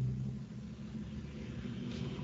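Low, steady background hum and rumble with no speech, a little stronger in its lowest note during the first half second.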